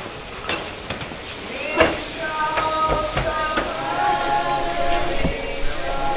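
Knocks and clanks as a metal casket is shifted on a wheeled casket lift, the sharpest about two seconds in. In the second half there is a steady, slightly wavering whine made of several tones at once.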